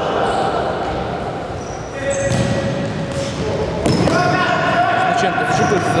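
Futsal ball being kicked and bouncing on the sports-hall floor, echoing in the large hall, with players shouting.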